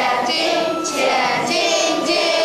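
A class of children singing together in unison, in a string of held notes.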